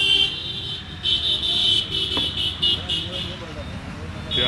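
Roadside traffic noise, with a high-pitched wavering tone from about one second in that stops a little past three seconds, and a single click a little after two seconds.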